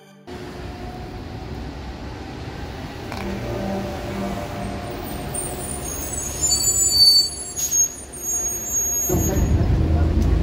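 A large vehicle's engine rumbling over city street traffic, with brief high-pitched squeals about six to eight seconds in, typical of bus brakes. The low engine rumble gets louder near the end.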